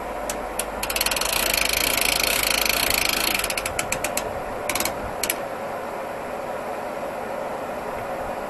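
A ratchet mechanism on a portable band sawmill clicking rapidly for about two and a half seconds, then a few shorter bursts of clicks, over a steady background hum.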